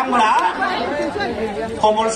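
Continuous speech: a man addressing a rally through lectern microphones.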